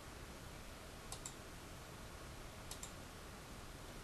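Two computer mouse clicks about a second and a half apart, each a quick double tick of button press and release, over faint steady hiss.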